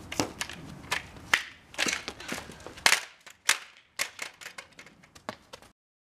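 Stunt scooter clattering on concrete: a string of sharp, irregular clacks and knocks from the wheels and deck, loudest around the middle, cutting off abruptly shortly before the end.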